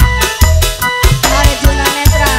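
Live organ tarling (dangdut tarling) band music: an electronic keyboard melody over a steady drum beat with regular bass drum hits.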